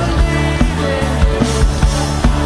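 A live worship band playing a song, with the drum kit keeping a steady beat under sustained bass and acoustic guitar. No lyrics are sung in this stretch.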